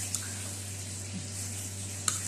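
Steady low hum with a faint even hiss, and a single soft click just after the start.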